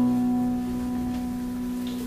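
The last chord of a song, held on keyboard and a Godis GR300CE acoustic-electric guitar, ringing on and slowly fading.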